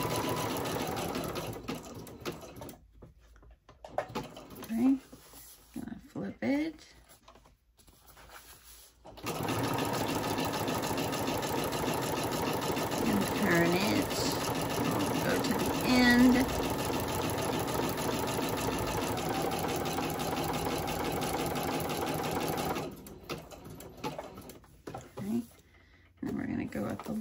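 Singer electric sewing machine stitching a zigzag seam through paper. It runs briefly at the start and stops, then after a few quiet seconds runs steadily for about fourteen seconds before stopping near the end.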